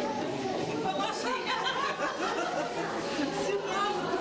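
Chatter of many overlapping voices, with no single speaker standing out.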